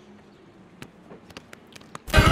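Quiet outdoor background with a few faint, scattered clicks in the second half.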